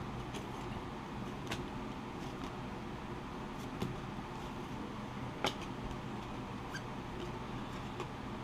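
Handling of trading cards: a steady low room hum with a few faint clicks as cards are shuffled and set against a small acrylic stand, the clearest about halfway through.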